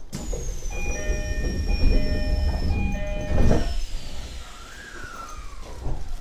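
Commuter train's door-closing chime sounding in a repeated pattern of tones, then the sliding doors shutting with a loud knock about three and a half seconds in. Near the end an electric whine glides down in pitch as the train starts to move off.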